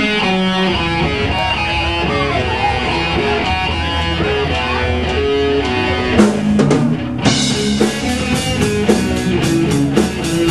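Live rock band: an electric guitar line played through a talk box, its notes bending. About six seconds in the drum kit comes in with a cymbal crash and then keeps a steady beat under the guitars and bass.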